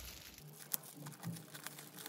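Faint rustling and crinkling of a thin plastic sleeve being handled and pulled open, with a few light ticks.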